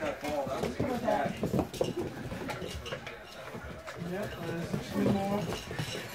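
Quiet, indistinct talking and laughter with scattered light clinks and clicks from the tin cans and toys hanging on a puppies' PVC play gym as the pups knock into them.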